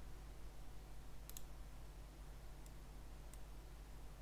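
Computer mouse clicks: a quick double click about a third of the way in, then two faint single clicks, over a low steady hum.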